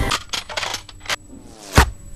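Trailer sound effects: a quick run of sharp metallic clicks, then a rising whoosh that ends in a hit near the end.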